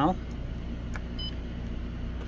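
A single short, high beep from the Xerox WorkCentre copier's touchscreen about a second in, the key tone for a tap on an on-screen tab, over a steady low hum.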